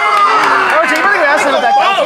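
Excited voices talking over one another, with crowd chatter.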